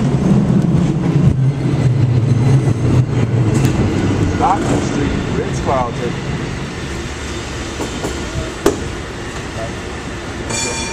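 Cable car running with a steady low rumble that fades about halfway through. A couple of short squeaks and a sharp click follow near the end.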